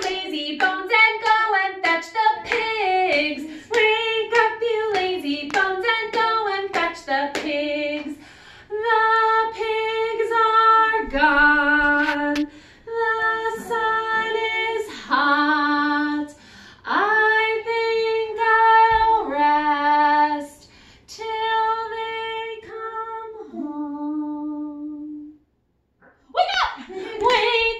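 A woman singing a simple children's song tune, unaccompanied: quick short notes at first, then longer held notes. It stops near the end.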